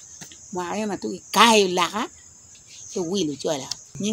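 A woman speaking in two short stretches, over a steady high-pitched insect chorus that carries on through the pauses.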